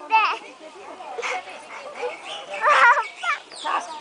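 A child's high-pitched voice, with a short squealing cry about three seconds in, over scattered talk from other people.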